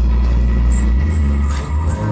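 Live experimental electronic music: a loud, sustained low drone that shifts up in pitch about a second in, with short high electronic chirps scattered above it.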